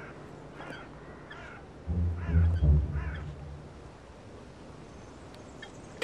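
Birds calling several times, with a loud low deep sound swelling about two seconds in and fading out by about three and a half seconds.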